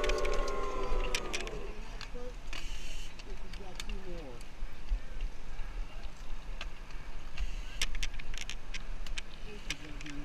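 Voices in the background around the start gate, with scattered sharp clicks and knocks from the BMX bike being set against the gate. A held tone with harmonics drifts slightly down and fades in the first second and a half.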